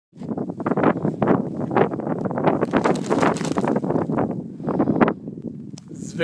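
Strong wind buffeting the phone's microphone in loud, irregular gusts.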